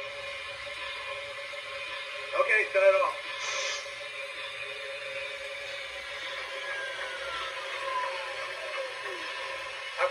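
Sound system of a stationary MTH Protosound 3 O-gauge steam locomotive idling with a steady hum. A short burst of radio-style crew chatter comes about two and a half seconds in, then a brief hiss. A slowly falling tone fills the second half.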